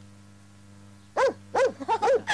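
A low, steady mains hum on the old film soundtrack. About a second in, a person's voice calls out in three short swooping, hoot-like sounds.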